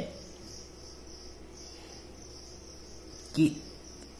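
Steady high-pitched insect trill in the background over a faint low hum.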